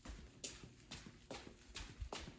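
Footsteps of a person walking in boots, about four steps a couple of times a second.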